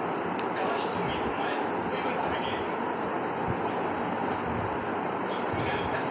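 A man's voice talking over a steady, even background noise that does not change.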